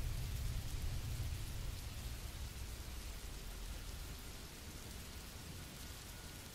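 A quiet, steady rain-like hiss over a low rumble, slowly fading: the background ambience bed laid under the narration.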